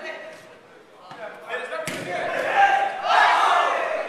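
Players calling and shouting to each other during an indoor soccer game, loudest in the second half. About two seconds in there is one sharp impact, a ball being struck.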